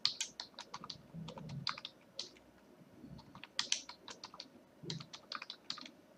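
Computer keyboard keystrokes typed in short, irregular runs with a brief lull about halfway through: a password being typed and then typed again to confirm it.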